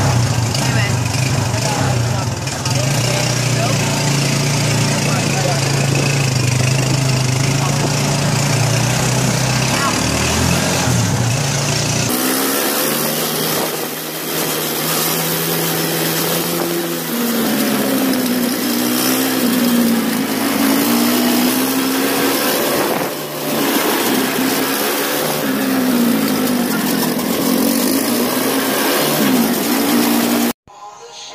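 Motor vehicle engine running with a steady low hum. After a cut about twelve seconds in, its pitch rises and falls repeatedly as the vehicle speeds up and slows down.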